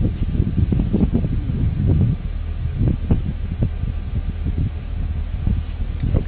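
Wind buffeting the microphone: an uneven low rumble with gusty surges and thumps.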